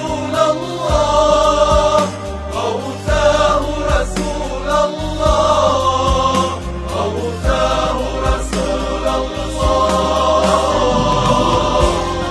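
A choir singing a devotional Mawlid chant (nasheed), layered voices holding long notes over a steady low bass line.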